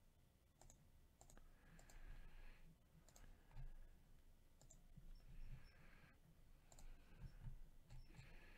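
Faint, scattered clicks of a computer mouse and keyboard over near silence.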